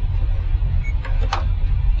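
A few light clicks about a second in from operating the computer running the animation software, over a steady low room rumble.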